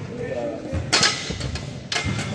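Two sharp knocks on a freestanding metal pull-up bar as hands grab it and a man hangs from it, one about a second in and one near the end.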